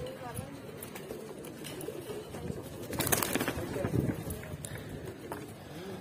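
Caged Giribaz pigeons cooing softly. About three seconds in there is a brief rustling clatter, followed by louder cooing.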